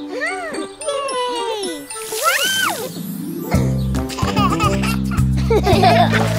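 Cartoon child and baby voices exclaiming and giggling in gliding, sing-song calls over tinkly chime sound effects. About three and a half seconds in, an upbeat children's song backing track with a steady bass line comes in.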